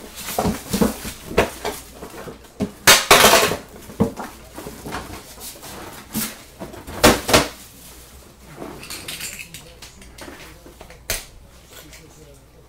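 Cardboard trading-card boxes being handled on a table: irregular knocks and short scrapes as a small box is pulled from the case and set down, loudest about three and seven seconds in, with a sharp tap near the end.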